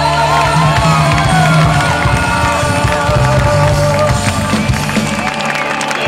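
Live rock band playing loud, with a wavering melody line over bass and drums and the crowd yelling. The bass drops out briefly near the end.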